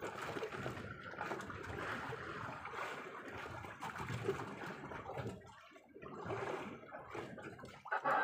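Sea water lapping and trickling against the hull of a small outrigger fishing boat, an uneven wash that briefly drops away about six seconds in.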